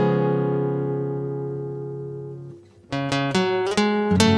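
Peaceful instrumental music: a held chord fades away over about two and a half seconds, and after a brief pause new notes start again one after another.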